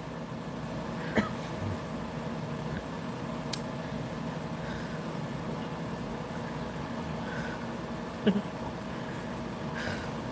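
Steady background hum with a few faint fixed tones, like a fan or electrical hum, broken by a brief short sound about a second in and another near the end.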